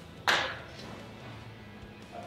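A single sharp metal clank about a quarter second in, ringing out briefly, as a steel tool on a two-stroke outboard's flywheel hub knocks against it; quiet background music plays underneath.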